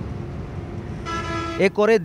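A steady rumble of traffic noise, with a horn sounding one steady note for about half a second, about a second in.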